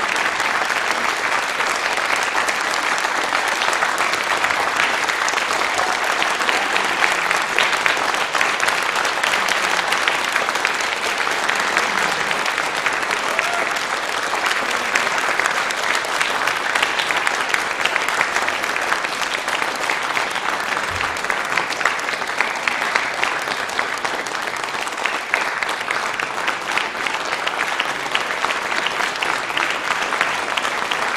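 Audience applause: many people clapping in a dense, even patter that holds at a steady level without dying down.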